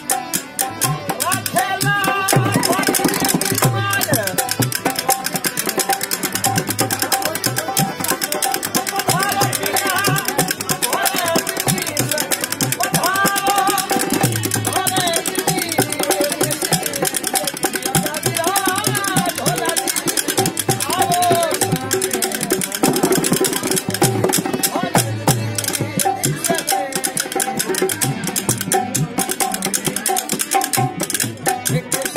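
Rajasthani Langa folk music played live. A man sings over a dholak drum and the clacking of khartal wooden clappers, with a steady harmonium drone underneath.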